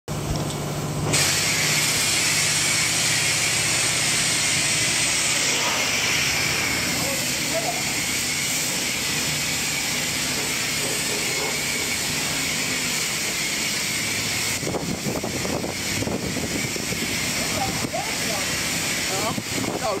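High-pressure spray wand at a self-serve car wash, its water jet hissing steadily against a car's body panels and wheel. The spray starts about a second in.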